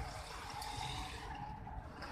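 Steady street noise of vehicles passing slowly on the road: an even hiss with a low rumble.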